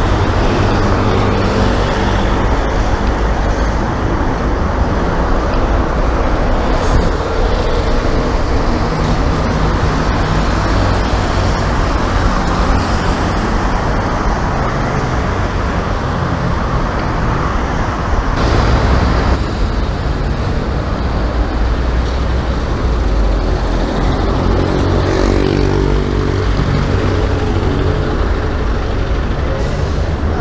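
Steady road traffic passing close alongside: car, bus and truck engines with tyre noise. A few seconds before the end, one vehicle's engine note rises and falls clearly above the rest.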